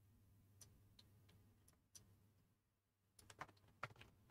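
Near silence, broken by a few faint, short clicks and a small cluster of them near the end, from hand-writing on a computer screen with an input device.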